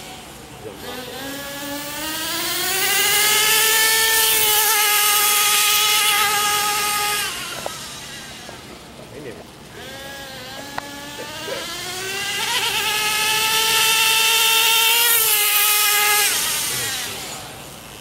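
Gas-powered RC car's small two-stroke engine revving up to a high, steady buzz, holding it, then falling away as the car speeds past. This happens twice, with a quieter gap between the runs.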